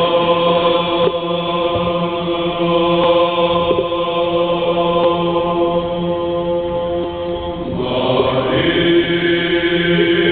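Orthodox church choir singing a hymn unaccompanied, in long sustained chords over a steadily held low note. The chord changes a little before eight seconds in.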